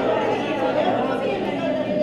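Chatter of many people talking at once, a steady hubbub of overlapping voices in a large room.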